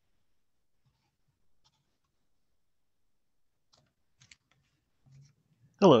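Near silence, broken by a few faint short clicks about four seconds in, then a voice saying "hello" at the very end.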